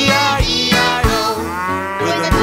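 A cartoon cow's long, drawn-out moo, falling slightly in pitch, over a children's-song music backing with a steady beat.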